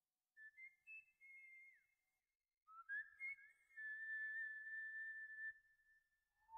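Faint whistling: a few short, thin notes at about the same pitch, one bending downward, then a rising note that settles into a long held whistle before stopping shortly before the end.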